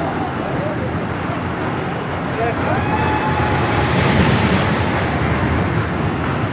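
Busy roller coaster area: many voices over a steady rumble that swells about halfway through, with one long held cry rising into it.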